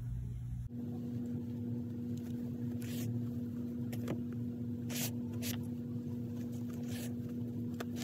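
A steady low electrical-sounding hum, with a few short rustles of yarn being drawn through crocheted stitches.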